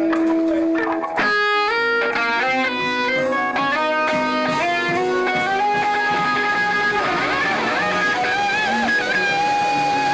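A band jamming on electric guitar, bass guitar and drums. The electric guitar plays a lead line that moves to a new phrase about a second in, then turns to bent, wavering notes in the second half.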